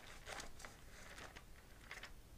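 Faint rustling of thin Bible pages being turned by hand while looking up a passage, a few soft swishes and flicks.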